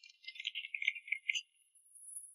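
Light applause from a few people clapping in a meeting room, a scatter of quick claps that dies away after about a second and a half.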